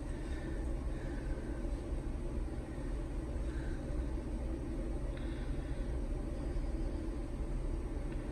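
Steady low background rumble and hum, with no distinct sounds standing out.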